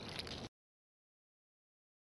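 Faint background sound that cuts off abruptly about half a second in, followed by complete digital silence.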